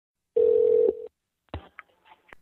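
A steady telephone line tone sounds for about half a second and cuts off, then a click about a second and a half in, with a short higher beep just after, as a phone call connects.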